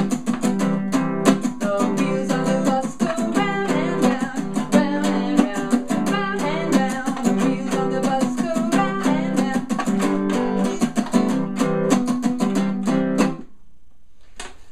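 Acoustic guitar with a capo, strummed with a pick in a fast, even 'boom boom chick' pattern, the strings damped between strokes for a percussive chick. About five strokes a second, stopping suddenly near the end.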